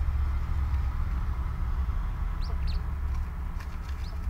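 Quail giving a few short, high chirps, a quick cluster about two and a half seconds in and another near the end, over a steady low hum.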